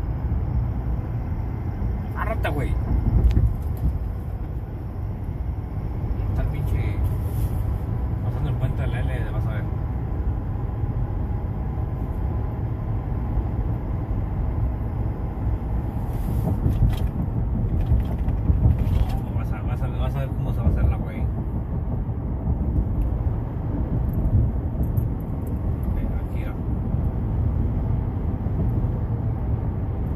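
Steady low rumble of road and drivetrain noise inside a new pickup truck's cabin at freeway speed, the racket ("ruidero") the owner wants recorded.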